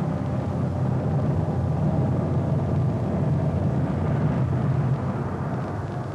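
A loud, steady low rumble, a cartoon sound effect, that begins fading out near the end.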